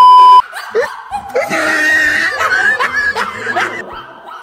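A loud, steady TV test-tone beep, laid over a colour-bars glitch transition, cuts off about half a second in. Then several people laugh and shriek.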